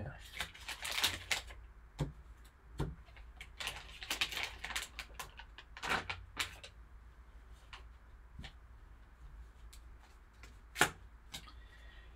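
Foil card-pack wrapper crinkling and rustling as it is torn open and crumpled, in several bursts during the first half, with scattered lighter crackles after and a single sharp click near the end.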